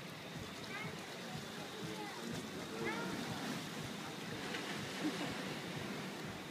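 Indistinct voices talking over a steady wash of sea water.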